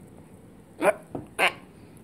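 Two short, sharp bark-like calls, a little over half a second apart, starting about a second in.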